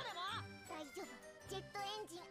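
Anime episode soundtrack playing quietly: high-pitched children's voices speaking subtitled Japanese dialogue over light, tinkling background music.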